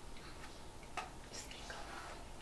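A few faint, irregular light clicks of fingertips tapping a smartphone screen.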